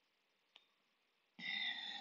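Near silence with a faint click, then, about a second and a half in, a man's short throat or mouth sound just before he starts speaking.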